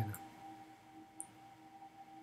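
Faint steady background tone, a constant high hum with a lower one beneath it, with a single faint short tick about a second in.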